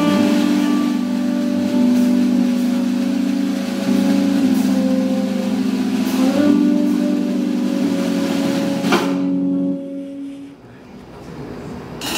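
Live jazz trio of keyboard, tenor saxophone and drums playing a slow, held passage: long sustained tones with a few cymbal strokes. About ten seconds in, the sound fades away to a brief lull.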